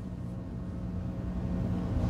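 A steady low hum with faint room noise underneath, rising slightly near the end.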